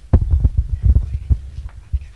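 Handling noise from a handheld microphone: a run of irregular low thumps and rumbles, several a second, as the mic is lowered and moved between hands.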